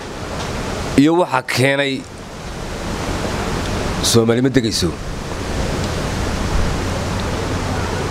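A man's voice in two short phrases over a loud, steady rushing noise that swells over the first couple of seconds and then holds.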